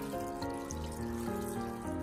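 A thin stream of water running into a bowl of soaked white fungus, filling it, with background music playing throughout.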